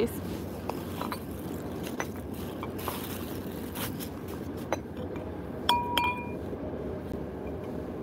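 Glassware in a cloth tote bag clinking as the bag is handled and opened: scattered light knocks and clinks, then two sharper ringing clinks about six seconds in.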